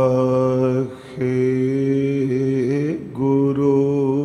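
A man's voice chanting unaccompanied in long held notes. There are short breath breaks about a second in and near three seconds, with a rising glide into the second break and a wavering pitch after it.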